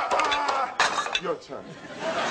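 A few sharp metallic clinks of gym weights, a quick cluster at the start and another just before the middle, among a man's short spoken sounds.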